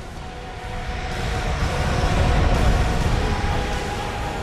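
Aircraft engine noise at an airfield: a deep rumble with a steady drone over it, swelling to its loudest about three seconds in and then easing off.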